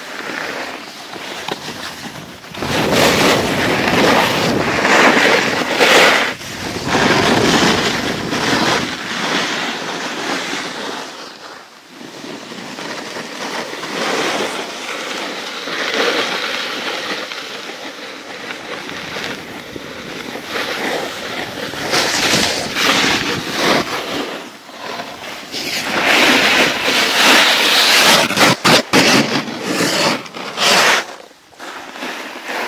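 Edges scraping and hissing over hard-packed snow as the camera-holder slides down a groomed slope, mixed with wind on the microphone, swelling and fading in long surges. A few sharp knocks come near the end.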